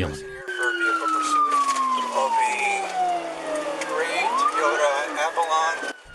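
Police car siren in a slow wail, falling steadily in pitch for about four seconds and then sweeping back up, picked up by the dashcam of the squad car in pursuit.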